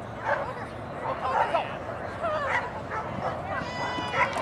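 Small dogs yipping and barking in quick, high-pitched calls, mixed with people's voices.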